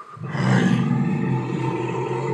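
A deep, drawn-out roar voicing the installation's dragon, starting just after the beginning and held at one low, steady pitch.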